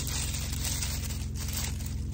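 Paper tissue being pulled and unwrapped from around a jar candle by hand: a continuous papery crinkling noise with no pauses.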